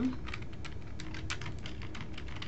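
Typing on a computer keyboard: a quick, irregular run of key clicks as a short phrase is typed.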